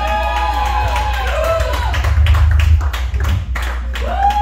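Amplified electric guitar noise from a rock band's amps: pitched tones that swoop up and fall back in arcs, several overlapping, over a steady low amp hum, with many quick irregular clicks.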